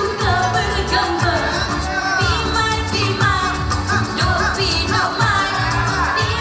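A boria song: singing with sliding, ornamented melody lines over amplified music with a steady beat and heavy bass.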